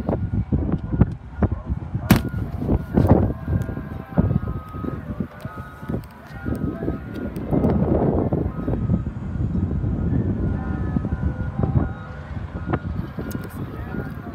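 Uneven rumbling and rustling of a hand-held phone microphone being moved about outdoors, with a sharp click about two seconds in and faint thin high tones in the background.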